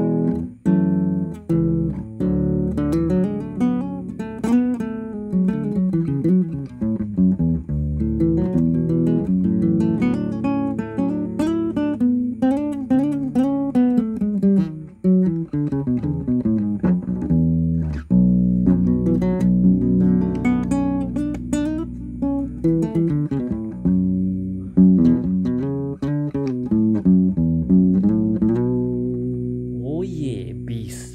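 Nylon-string classical guitar (a Yamaha CG-40) with five-year-old strings, detuned about five notes below standard to a baritone-like tuning, fingerpicked in continuous low, ringing notes and chords.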